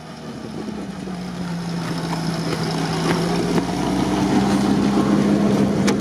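UAZ 4x4's engine running steadily, its hum rising a little in pitch about a second in and growing gradually louder.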